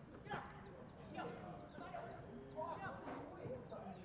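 Football players calling and shouting to each other on the pitch during open play, the calls short, distant and spaced out.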